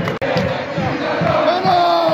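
Singing voices holding long, gliding notes over a low thumping beat. The sound cuts out for an instant just after the start.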